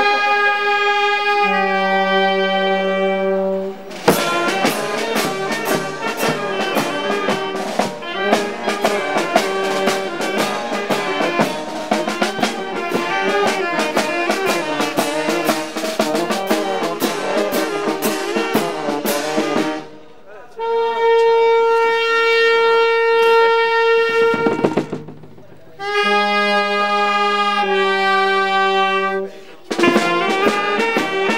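A small street wind band of saxophones, clarinet and tuba with bass drum and cymbals playing a festive tune. It opens on held chords, then about four seconds in breaks into a fast, rhythmic passage thick with drum and cymbal beats. Near the end come long sustained chords with short breaks between them.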